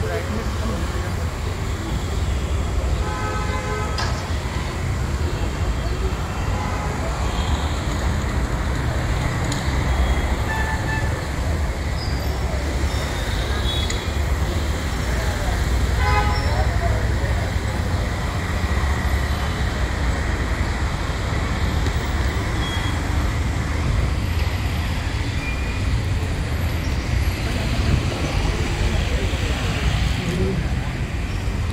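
Street ambience: a steady low traffic rumble with voices in the background and a couple of short car-horn toots.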